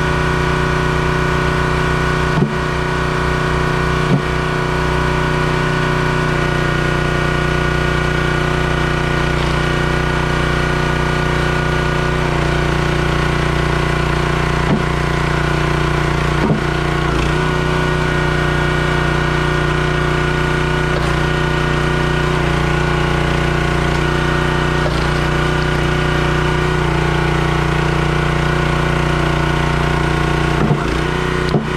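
Engine of a Crimson hydraulic log splitter running steadily, with a few sharp knocks as wood is split on the beam.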